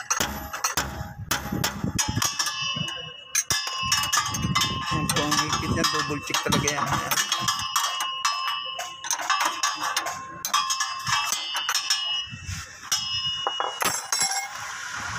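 Metal clinks and clicks from a wrench on the leaf-spring shackle bolt of a Toyota Hilux as the nut is tightened over a new bushing. The clicks come in quick, irregular succession.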